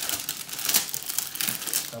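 Clear plastic shrink-wrap being pulled off a cardboard toy package, crinkling and crackling irregularly as it is stripped away.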